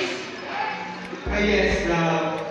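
A man's voice amplified through a handheld microphone and PA, with a low thump about a second and a quarter in.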